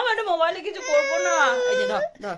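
A baby crying with one long, drawn-out high wail that starts about a second in and dips in pitch at its end, after a few spoken words from a woman.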